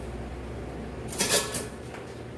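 A brief clatter of a spoon against a frying pan about a second in, over a steady low hum.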